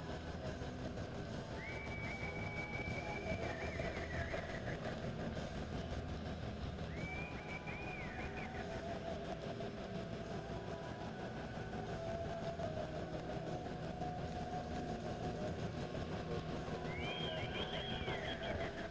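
Steady mechanical hum of a large indoor arena. Three long high-pitched tones slide up and then hold: about two seconds in, about seven seconds in, and again near the end.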